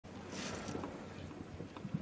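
Faint ice-arena ambience: a steady, noisy hiss of the hall. There is a brief high swish about half a second in and a soft thump at the very end.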